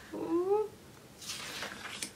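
A single short call, about half a second long, rising then falling in pitch. About a second later comes the soft rustle of a paper planner page being turned.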